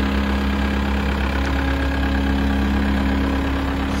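Caterpillar 236D skid steer loader's diesel engine idling steadily while the machine stands still, an even low drone with a steady throb.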